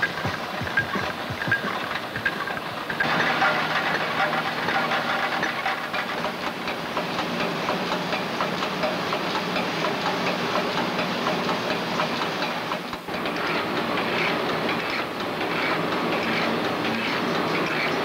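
Automated spark plug production machinery running: a run of sharp clicks at first, then from about three seconds in a dense, continuous mechanical clatter over a steady hum, with a brief dip about two-thirds of the way through.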